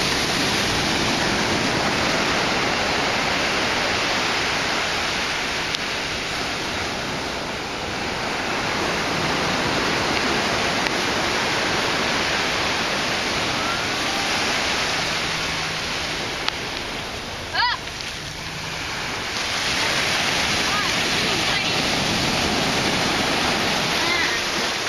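Ocean surf breaking and washing up a sandy beach: a loud, continuous rush of water noise that swells and eases as the waves come in.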